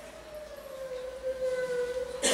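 A single long held musical note from the concert performer. It slides slightly down in pitch and swells steadily louder.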